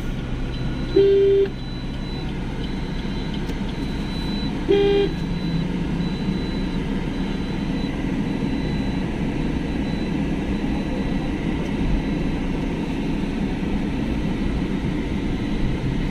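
A vehicle horn gives two short toots, about a second in and again about five seconds in. A car's steady running noise is heard from inside its cabin throughout.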